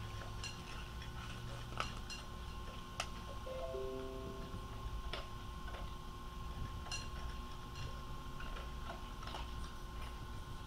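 Quiet room tone with a steady high electronic whine and a low hum, broken by scattered faint clicks at uneven intervals. A short run of four falling tones sounds about three and a half seconds in.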